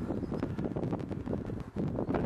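Wind buffeting the microphone of a handheld camera outdoors, a continuous low, uneven rumble.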